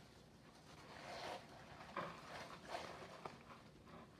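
Hands rummaging through crinkle-cut paper shred filler in a cardboard box: faint rustling in a few short bursts, with a sharp click about two seconds in and another shortly after three seconds as a plastic-wrapped item is lifted out.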